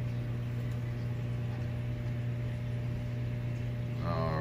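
Steady low electrical hum of aquarium equipment such as pumps, with a faint even hiss over it.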